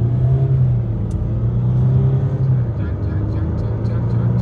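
Range Rover Sport's V6 engine pulling hard under full acceleration, heard from inside the cabin as a steady low drone while the car gains speed quickly.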